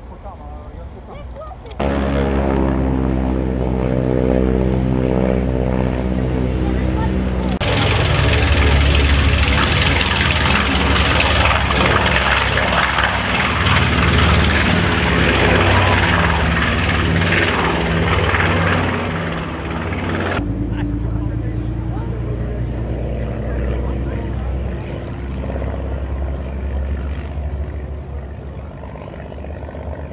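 North American B-25 Mitchell's twin Wright R-2600 radial engines. A steady, even drone comes in suddenly about two seconds in, then turns much louder and rougher at full takeoff power about eight seconds in. About twenty seconds in it drops back abruptly to a steadier, quieter drone as the bomber climbs away.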